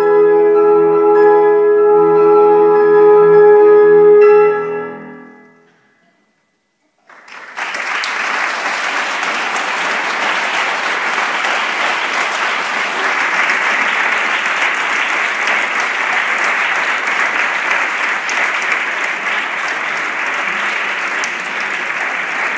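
Euphonium and piano holding the final chord of the piece, fading out about five seconds in. After a second of silence, audience applause breaks out and continues steadily.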